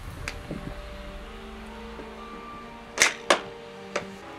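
A plastic bottle set down on the top rail of a wooden pallet: two sharp knocks about a third of a second apart near the end, over quiet background music with held notes.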